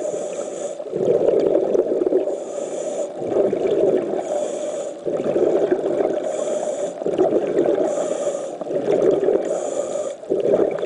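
Scuba diver breathing through a regulator underwater: a short hissing inhalation about every two seconds, each followed by a longer burst of exhaled bubbles.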